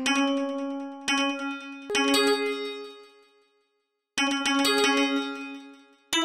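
Bell-like synthesizer notes from a stock FL Studio plug-in, struck a few at a time and left to ring out and fade. There are three strikes in the first two seconds, a short silence, then several more notes from about four seconds in, as a trap melody is sketched note by note.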